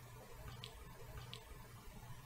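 Near silence: a faint low room hum, with two faint short ticks about two-thirds of a second apart.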